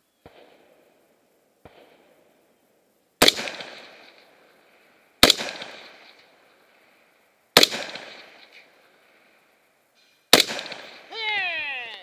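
Four rifle shots from a scoped AR-style rifle, fired two to three seconds apart, each followed by an echo trailing off over about a second.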